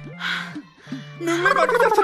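A short breathy rush just after the start, then from about halfway a high, quavering voice with a wavering, downward-sliding pitch, drawing out the start of a phrase. A low steady hum of background music runs underneath.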